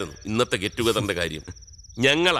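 Crickets trilling steadily in the background. A man's voice speaks briefly in the middle and is the loudest sound.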